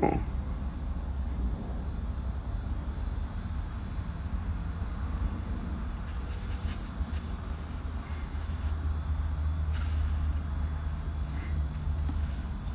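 Steady low rumble of an open-top Lamborghini with the top down, engine and road noise heard through a phone's microphone.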